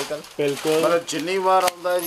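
Speech in the shop, with light rustling and clicking as suit cloth is unfolded and held up, and one sharp click near the end.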